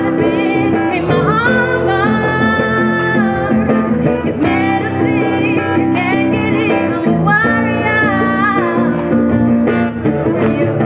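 A woman singing live into a microphone, holding long, bending notes over plucked guitar accompaniment.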